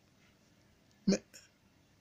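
Near silence, broken just after a second in by a man saying one short word.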